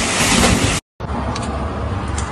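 Heavy water splashing and sloshing in a bathtub as a person thrashes in it, cutting off suddenly just under a second in. After a brief silence, a steady low outdoor rumble of roadside traffic and wind, with two faint clicks.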